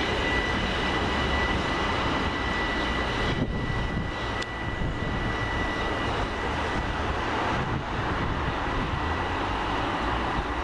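Southern Class 377 Electrostar electric multiple unit pulling away from the platform: a steady high electric whine over running rumble. The whine weakens after about three and a half seconds as the train draws off.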